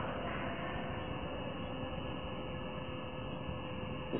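Steady hiss with a faint, even hum underneath: the background noise of the talk recording.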